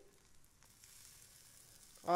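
Faint, steady sizzle of spinach batter cooking in a lightly oiled pan.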